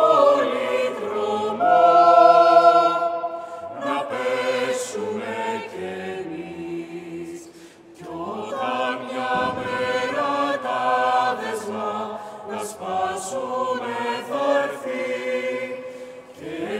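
Mixed-voice chamber choir singing a cappella in sustained, held chords; the sound swells about two seconds in, thins to a brief pause near the middle, then the chords resume.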